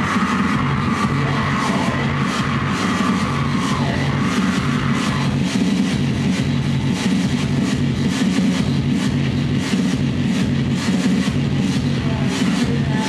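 Live noise music from tabletop electronics: a loud, dense wall of distorted noise over a pulsing low drone, with rapid crackling stutters throughout. A held whine sits on top for the first four seconds, then fades.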